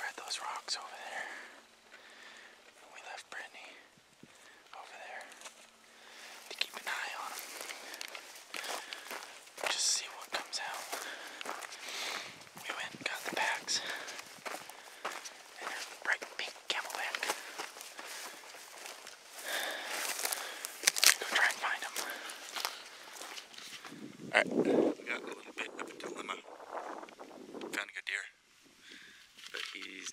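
Footsteps crunching through dry sagebrush, with brush scraping against clothing and packs as people hike, in a run of irregular crunches and rustles. Soft whispering comes at times.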